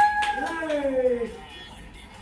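A child's drawn-out playful vocal sound that slides down in pitch for about a second, then dies away near the end.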